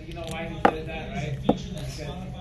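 Two short sharp clicks about a second apart as a metal clipper blade is handled and set down, under a man's voice talking in the background.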